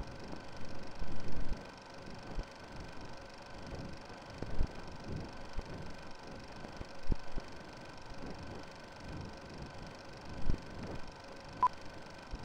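Old-film countdown leader effect: a steady film hiss with a faint hum, broken by irregular crackles and pops. Near the end comes one short high beep, the sync pop of a countdown leader.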